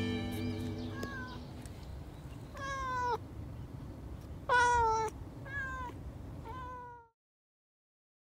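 A calico cat meowing five times. The first is faint, the loudest comes about halfway, and each meow falls in pitch at its end. Held music notes fade out at the start, and all sound stops suddenly about a second before the end.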